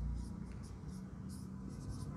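Marker pen writing on a whiteboard: a string of short, faint scratchy strokes as letters are written.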